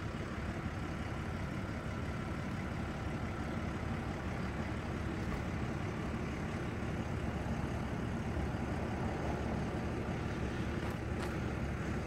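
A steady, even mechanical hum, like an idling engine, at a constant level with no distinct events.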